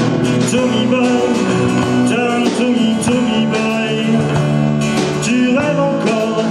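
Live acoustic rock band playing: strummed acoustic guitars and a drum kit keeping a steady beat, with a wavering lead melody above them.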